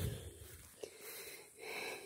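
A person breathing close to the microphone: two audible breaths, one at the start and one near the end.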